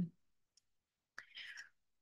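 A pause in a woman's talk: near silence, then a little over a second in a faint mouth click and a short breath in.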